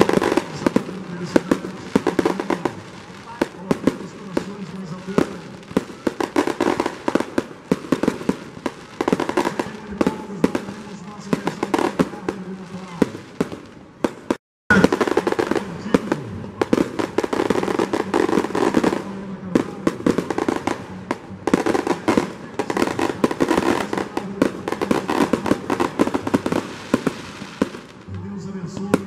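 Aerial fireworks going off in a dense, continuous string of pops, bangs and crackles, broken by a brief silence about halfway through.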